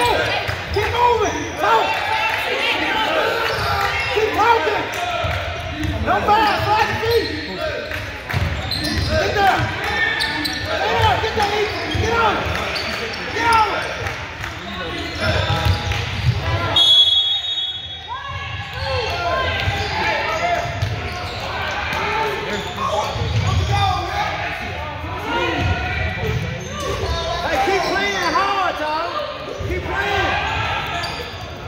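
Basketball game in a gym: a basketball bouncing on the hardwood floor under constant overlapping voices of players and spectators, with echo from the large hall. A short, high whistle blast comes about halfway through.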